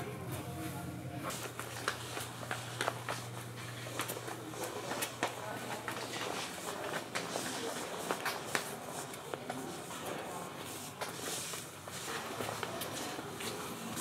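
Children's footsteps on a hard store floor, heard as light, irregular taps, over a steady low hum that stops about six seconds in.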